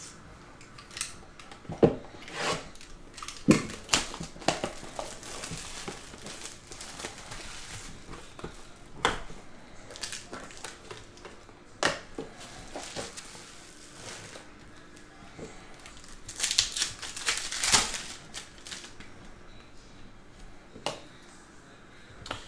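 Shrink-wrap being torn off a box of 2022 Panini Elements Football cards and the cardboard box opened by hand: plastic crinkling and rustling with scattered sharp clicks and taps, and a longer stretch of rustling about sixteen seconds in.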